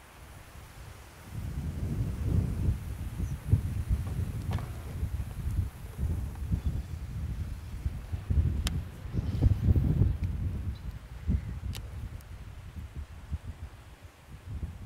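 Wind buffeting the microphone, an uneven gusting low rumble, with a couple of faint sharp clicks.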